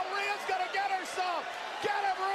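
Speech only: a voice talking steadily, quieter than the hosts' talk around it.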